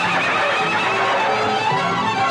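A horse whinnies in the first second, a wavering call falling in pitch, over an orchestral film score with brass.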